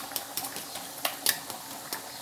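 Oven-baked pork belly on a foil-lined baking tray, hot from an hour in the oven, giving off irregular light crackling and ticking over a faint sizzle.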